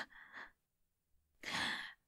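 A woman's soft, breathy sigh, about half a second long and without voice, about one and a half seconds in, after a brief near-silent pause; just before it the tail of a spoken "huh" fades out.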